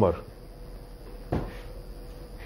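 A man's voice ending a word, then quiet studio room tone with a faint steady hum, broken once by a single sharp knock about one and a half seconds in.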